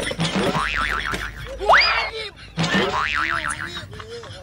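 Cartoon-style comedy sound effects: a wobbling spring "boing" twice, with a quick rising whistle-like glide between them.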